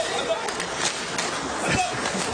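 Ice hockey rink sound during play: skates scraping the ice and several short stick-and-puck clicks, over a murmur of crowd voices in the arena.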